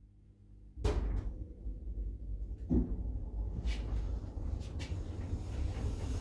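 Stannah passenger lift setting off upward: a clunk about a second in, then a steady low rumble of the car travelling, with another knock a couple of seconds later.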